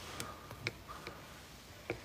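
Low room tone with three faint, short clicks, the last just before the end.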